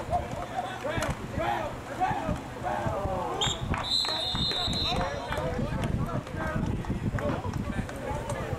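Players and sideline voices shouting on a football field, with a referee's whistle about three and a half seconds in: a short blast, then a steady one lasting about a second, blowing the play dead after the tackle.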